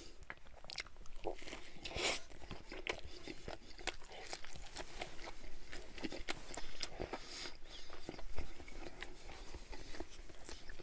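Close-miked chewing of a mouthful of breaded chicken sandwich with lettuce: many small wet mouth clicks and soft crunches, with a sharper crunch about two seconds in.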